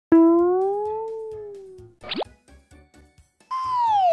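Cartoon sound effects in an intro jingle: a sudden pitched tone that bends up slightly and fades over about two seconds, a quick upward whistle-like sweep about two seconds in, then a loud downward-gliding whistle starting near the end. A faint soft beat runs underneath.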